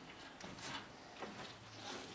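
Quiet stretch of faint room tone with a few soft rustles and a brief low murmur near the end.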